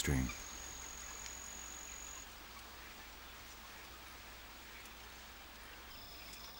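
A high, steady insect trill that stops about two seconds in, then a faint, even background hiss of natural ambience.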